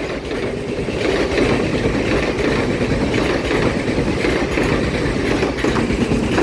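A Taiwan Railways TEMU2000 Puyuma tilting electric multiple unit running past at close range: a steady rumble of steel wheels on the rails.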